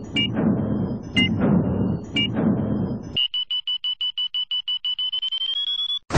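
Countdown timer sound effect. Three single electronic beeps a second apart, each followed by a low rumble. Then, from about three seconds in, a fast run of short beeps, about seven a second, that rises slightly in pitch as the count reaches zero.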